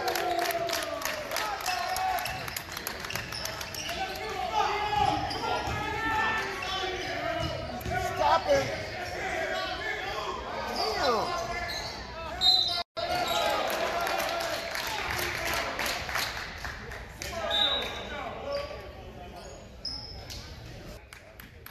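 Basketball dribbled on a hardwood gym floor, with repeated bounces, sneaker squeaks and players' and spectators' voices echoing in the gymnasium. The sound cuts out for an instant about 13 seconds in.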